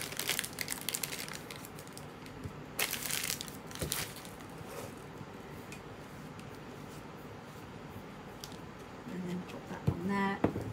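Plastic wrapping crinkling in a few short bursts over the first four seconds as a piece of sugar paste is pulled from it and handled, then only faint handling noise.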